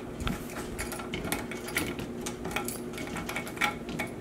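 Small metal clicks and taps of a lock being fitted onto the sliding glass doors of a reptile enclosure, scattered irregularly, over a faint steady hum.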